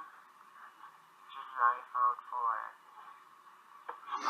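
A recorded voice of a young man talking, played back through laptop speakers: thin and tinny, in short phrases with pauses between them.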